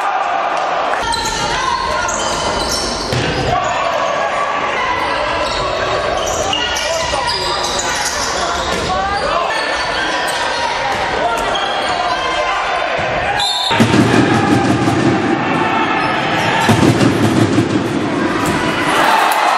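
Futsal ball being kicked and bouncing on a wooden sports-hall floor amid players' shouts, echoing in the hall. About 14 s in the sound changes suddenly to a louder, deeper mix.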